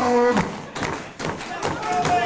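A voice calling out, with a few dull thumps in the middle.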